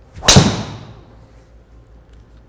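Driver head striking a golf ball off a tee: one sharp crack about a quarter second in that rings out briefly. A solid strike.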